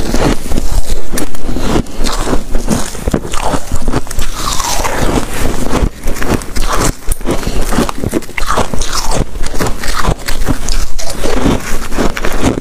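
Close-miked biting and chewing of soft freezer frost: dense, crisp crunches in quick succession, going on throughout.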